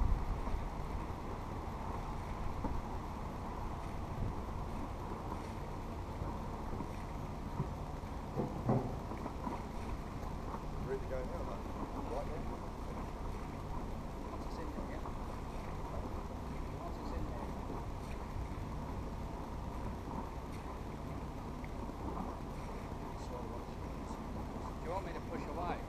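A narrowboat's diesel engine running steadily at low revs, a low even hum heard from the bow, with a single thump about nine seconds in.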